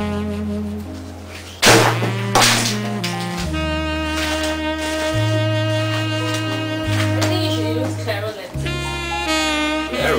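Background music: a held melody line over slow, sustained bass notes that change every second or so. Two loud, sharp hits come close together about two seconds in.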